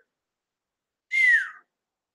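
A single short whistle-like squeak about a second in, gliding down in pitch. Dead silence before and after it.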